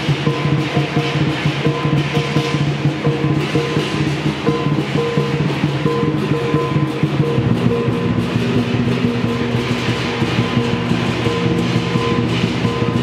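Chinese lion dance percussion ensemble playing: large barrel drums beaten in a fast, driving rhythm with many hand cymbals clashing and a gong ringing. The beat changes about seven and a half seconds in.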